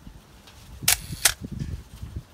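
Camera shutter firing: two sharp clicks about a third of a second apart, a little under a second in. Soft low thumps run underneath.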